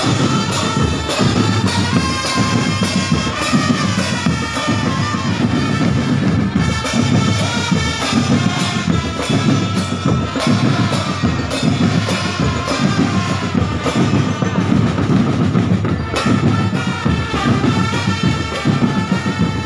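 Drum band playing an arrangement of a pop song: marching bass and snare drums beating in a steady, dense rhythm under a sustained melody line.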